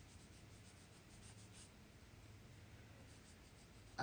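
Near silence: room tone with a low steady hum and faint soft rubbing.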